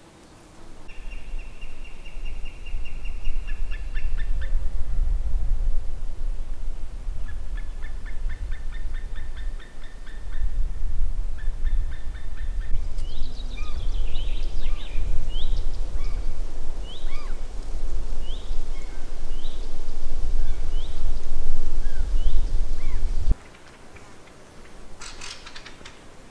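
Wind buffeting the microphone in a loud low rumble that cuts off suddenly near the end, with small birds calling over it: rapid trills in the first half, then a run of short rising calls about once a second.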